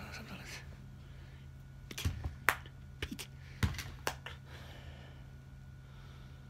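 A quick run of sharp clicks and knocks about two to four seconds in, over a steady low hum.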